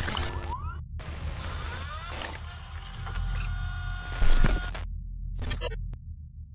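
Electronic glitch logo sound design: a low rumble under crackling digital noise and stuttering static, with rising swept tones in the first two seconds and a louder hit about four seconds in, then choppy cut-outs near the end.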